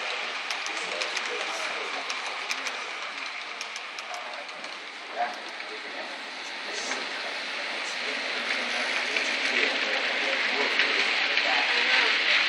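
HO scale model train running on the layout's track, its wheels rolling and clicking. It grows louder over the last few seconds as the cars pass close. Faint voices are in the background.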